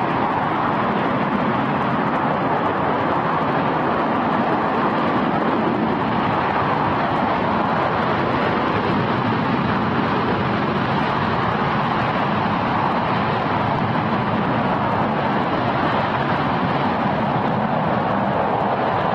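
RS-25 liquid-hydrogen/liquid-oxygen rocket engine in a hot-fire test, running at steady thrust: a loud, even, rushing noise that holds level without a break.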